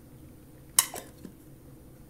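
A glass candle jar with a metal lid being handled on a glass tabletop: one sharp clink a little under a second in, followed by a couple of faint knocks.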